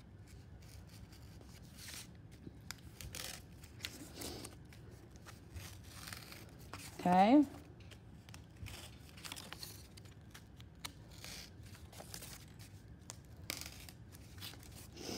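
X-Acto craft knife cutting through two layers of cardboard in short, irregular scraping strokes, the board being turned against the blade. A brief voiced sound comes about seven seconds in.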